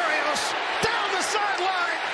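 Television play-by-play announcer's raised voice calling the run over steady stadium crowd noise.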